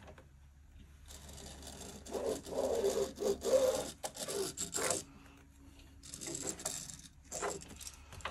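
A heat-erasable fabric marking pen scratching across cotton fabric along the edge of a clear quilting ruler. It comes in two stretches: a longer one from about a second in to about five seconds, and a shorter one near the end.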